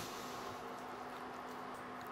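Quiet room tone with a faint steady hum and no distinct sounds.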